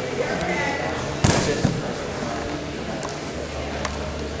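Grapplers' bodies hitting a foam wrestling mat in a takedown: one loud thud about a second in, then a smaller one.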